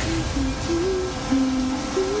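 Eerie trailer score: a slow, low melody of single held notes that step up and down, over a dark rumbling bed.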